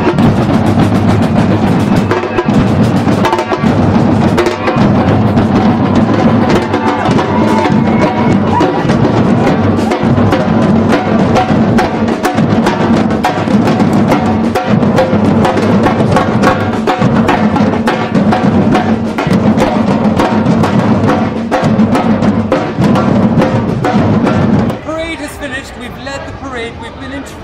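A street drumming band playing a fast, loud beat on large drums struck with sticks, with voices in the crowd. The drumming stops about a second before the end.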